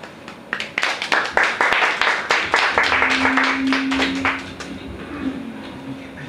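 A small audience applauding the end of a song. Scattered claps begin about half a second in, build into a burst of applause and die away after about four and a half seconds, with a voice calling out near the end of the clapping.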